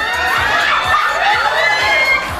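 A crowd of guests cheering and shouting, many high voices overlapping in excited calls and whoops.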